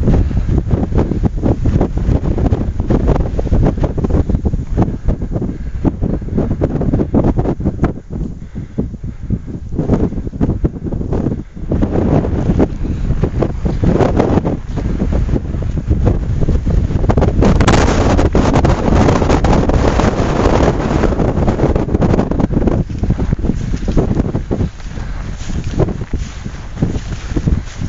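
Strong mountain wind buffeting the camera microphone as a loud, gusting rumble, with a stronger, hissier gust about two-thirds of the way through.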